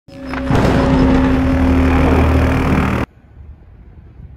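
A loud opening sound effect, a dense steady noise with a held tone in it, swelling in over the first half second and cut off abruptly about three seconds in, followed by faint outdoor background.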